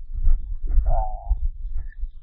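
A man's voice making a short drawn-out vocal sound in the middle, between spoken phrases. A steady low rumble lies underneath.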